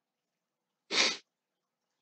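A single short, sharp burst of breath from a man, about a second in, with silence around it.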